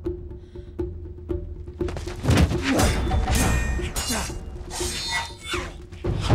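Film soundtrack of a sword-and-shield duel: a musical score with a steady beat, then from about two seconds in a rapid flurry of blade clashes and blows on shields with metallic ringing.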